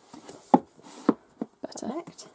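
Paperback books knocking and sliding against one another and the wooden shelf as one is pushed into a tightly packed row, with two sharp knocks about half a second apart and a softer one after.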